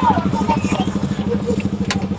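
A small engine idling steadily with a rapid, even pulse, and a single sharp click near the end.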